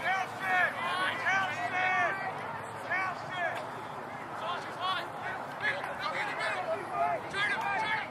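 Indistinct voices talking and calling out, from people on and around the field, with no words clear. The voices are busiest in the first few seconds.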